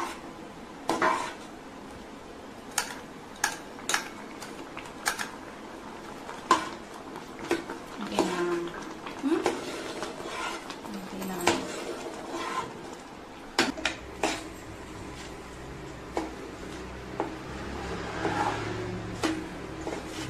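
Steel spoon stirring a thick milky mixture in a metal pan, clinking and knocking against the pan at irregular intervals, with a low hum joining about two-thirds of the way through.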